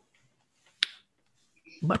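A mostly quiet pause with one sharp click a little before halfway. A voice starts a word just before the end.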